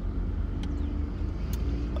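Steady low rumble of a car's engine running, heard from inside the cabin.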